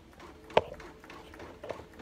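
A single sharp click about half a second in, then a few faint clicks near the end, against a quiet room.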